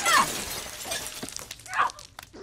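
A woman crying out in pain, a short cry at the start and another near the end, with a faint knock about a second in.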